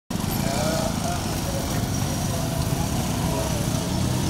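Steady outdoor background noise of passing traffic, with motorcycle engines and faint distant voices.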